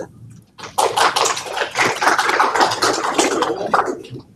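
Audience applauding for about three seconds, starting just under a second in.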